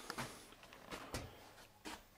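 A few faint, short knocks against a quiet background.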